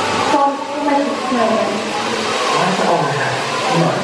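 A show's magic-spell sound effect: a loud, steady hissing rush that starts suddenly about half a second in, with voices over it.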